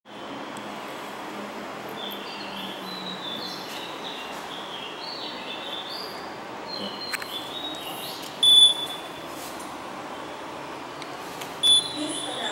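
Two short, loud, high-pitched beeps about three seconds apart, the second just before the end: an elevator hall call button acknowledging a press, its up arrow lit. Faint bird chirps come over a steady background noise in the first half.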